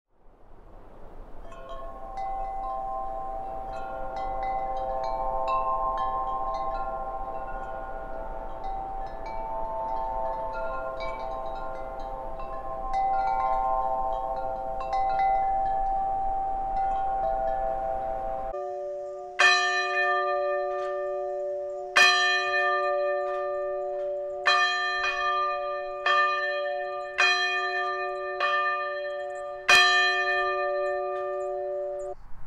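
Wind chimes ringing, many overlapping tones sounding one after another, for the first eighteen seconds or so. Then a sudden change to a single bell struck about seven times, one to three seconds apart, each strike ringing on.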